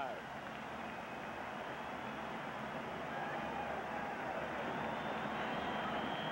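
Large stadium crowd cheering and shouting, a steady wash of noise that swells gradually as the opening kickoff nears.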